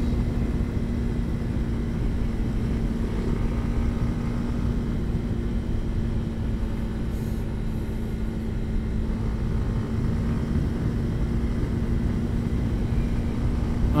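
Motorcycle riding at a steady cruise of about 80 km/h: a low wind rumble buffets a helmet-mounted lavalier microphone, over an engine note that holds one steady pitch.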